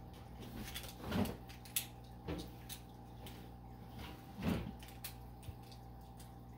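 Plastic Beyblade parts handled and fitted together in the hands, giving a few soft clicks and knocks over a faint steady hum.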